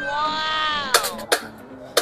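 A long, high exclamation rising then falling, then three sharp knocks as a bamboo tube is struck to shake cooked bamboo rice out onto a plate.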